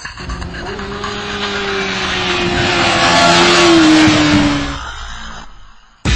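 2009 Kawasaki ZX-6R's 599 cc inline-four engine at high revs as the bike passes at speed: the sound grows louder on approach, drops in pitch as it goes by about four seconds in, then fades away.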